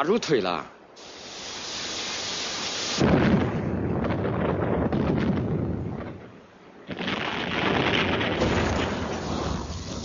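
Explosive blasting in mountain rock. A rumble swells for a couple of seconds, then a sudden blast about three seconds in rumbles on with falling rock. A second sudden blast comes about seven seconds in and rumbles until near the end.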